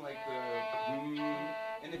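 Violin bowed in a short phrase of long held notes, changing pitch twice.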